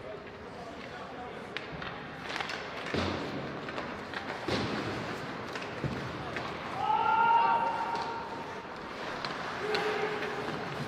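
Live ice hockey rink sound: sharp knocks and thuds of sticks, puck and boards during play, with voices calling out in the arena. About seven seconds in comes a drawn-out shout, the loudest sound.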